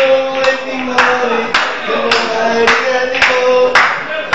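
Audience clapping in time, a little under two claps a second, along with sustained singing on held notes.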